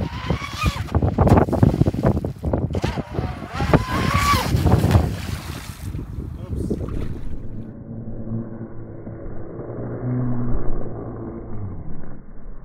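Proboat Blackjack 29 RC catamaran's brushless electric motor whining at speed on a 6S lipo, the whine rising in pitch about four seconds in, with wind buffeting the microphone. After about seven seconds the sound turns muffled and low, a steady low hum.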